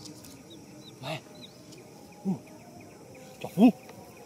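A voice calling out short, rising-and-falling calls ("uu", "maa", Thai for "come") three times, a little over a second apart, the last the loudest, over faint high chirps.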